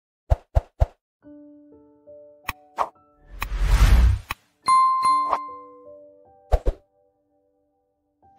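Short intro stinger built from sound effects and music: three quick pops, a few held notes, a swelling whoosh about three and a half seconds in, then a bright bell-like ding and a pair of clicks.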